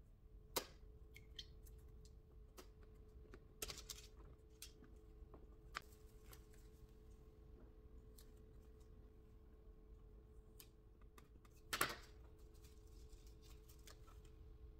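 Near silence broken by scattered small clicks and taps of plastic pieces being handled, with one louder clatter near the end. A steady faint hum runs underneath.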